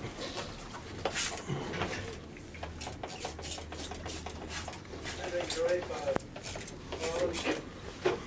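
Hand trigger spray bottle of Inox anti-corrosion lubricant being pumped in a series of short hissing squirts onto engine parts.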